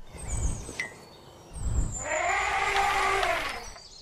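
Elephant trumpeting: one long call about two seconds in that rises and then falls in pitch, after a low rumble.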